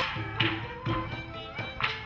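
Traditional Khmer folk music played by a drum ensemble. Drums beat a steady rhythm under a repeating melody, with sharp percussive strikes right at the start, about half a second in, and near the end.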